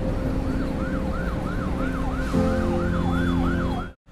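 Emergency-vehicle siren in a fast yelp, its pitch rising and falling about three times a second, over a steady low rumble. It cuts off suddenly at the end.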